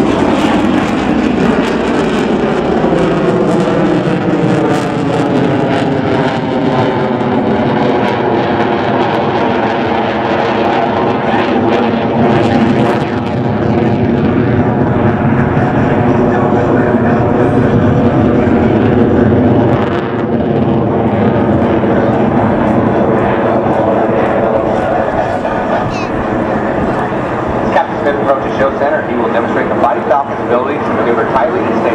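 Single-engine F-16 fighter jet flying overhead in a display manoeuvre: loud, continuous jet engine noise whose tone sweeps slowly up and down as the jet moves across the sky.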